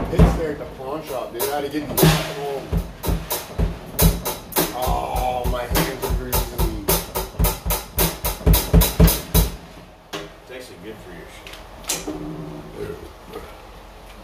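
A drum kit played in a fast run of hits with kick drum under it, alongside an electric guitar. The drums stop about nine and a half seconds in, leaving a few quieter held guitar notes.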